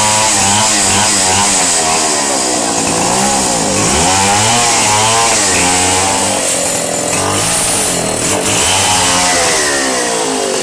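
Stihl two-stroke chainsaw cutting through a wooden plank, running loud and steady, its engine pitch rising and sagging repeatedly as the chain bites into the wood.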